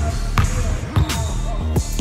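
Basketball bouncing on a hardwood gym floor a few times, heard over background music with a beat.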